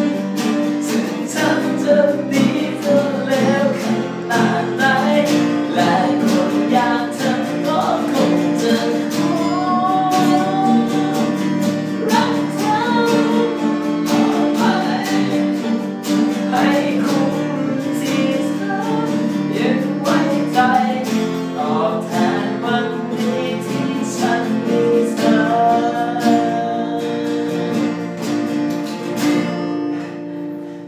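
Two steel-string acoustic guitars strummed together in a rhythmic accompaniment, with a man singing a melody over them. The playing ends and rings off right at the end.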